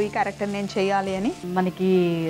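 Grated coconut mixture sizzling in a cast-iron kadai as it is stirred with a metal spatula, under a woman's voice that is the loudest sound, with some drawn-out tones.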